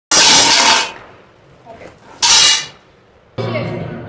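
Packing tape ripped off a cardboard box: two loud rasping tears about a second and a half apart. Music with a voice starts suddenly about three and a half seconds in.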